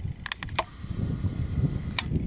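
Low outdoor rumble on the camera's microphone, with a quick run of about four faint clicks roughly a quarter second in.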